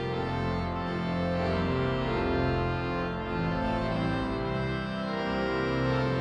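Large church pipe organ playing full, sustained chords that change every second or so.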